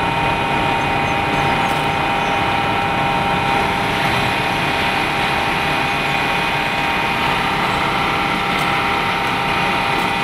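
City bus wheelchair lift running steadily as it raises its platform: a constant motor whine of several steady tones over the bus's running engine.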